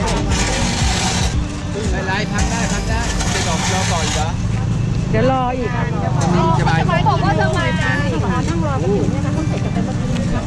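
A large truck's engine idling with a steady low rumble while several people talk over it, the voices busiest in the second half.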